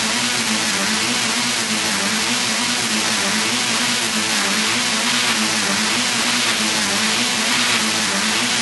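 Beatless breakdown in a hardcore techno track: a steady wash of harsh noise over a low, wavering synth tone, with no kick drum.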